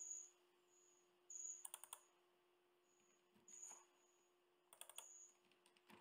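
Faint computer keyboard typing in four short bursts, about a second or so apart, over a faint steady hum.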